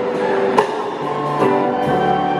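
Live rock band in concert, with electric guitar chords ringing over held notes and one sharp hit just over half a second in.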